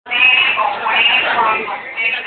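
People's voices, loud and high-pitched, with no clear words.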